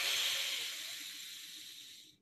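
A man's long, breathy exhale close to the microphone, loudest at the start and fading away over about two seconds, as a letting-go breath in a release meditation.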